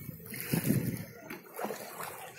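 Kayak paddle strokes splashing in lake water, two strokes about a second apart.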